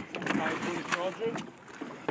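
Indistinct voices calling briefly over a steady background of wind and sea noise, with a few sharp knocks.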